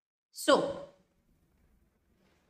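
Only speech: a woman says a single "so" about half a second in, then near silence.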